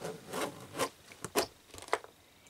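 Metal zip on a quilted boot being pulled by hand in a few short rasping strokes, tested to see that it still runs freely.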